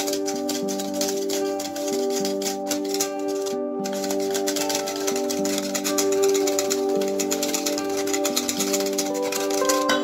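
Wire whisk beating eggs in a stainless steel bowl: rapid, continuous clicking of metal against metal, over background music with sustained notes.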